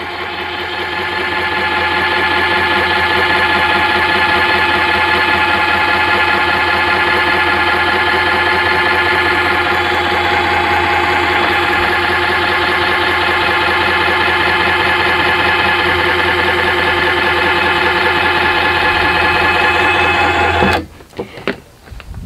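Electric lift motor of a Glide 'n Go XR power seat lift running with a steady whine as it raises the empty seat up into its stowed lock position. The sound builds over the first two seconds, holds steady, then cuts off suddenly about a second before the end, as the seat reaches its height.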